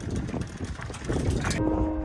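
Rough, rumbling wind noise buffeting the microphone. About one and a half seconds in it gives way to background music with steady held notes.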